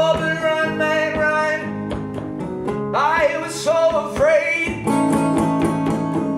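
Live solo acoustic guitar strummed steadily under a man's wordless sung wails: a long held note at the start, then two notes that swoop up in the middle.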